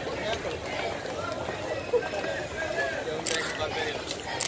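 Indistinct chatter of several people talking at once as a crowd walks, with a few sharp clicks, the clearest about three seconds in.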